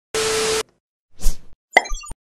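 Sound effects for an animated title sequence: a half-second burst of hiss with a steady tone in it, then a pop about a second later and a few quick clicks and pops near the end.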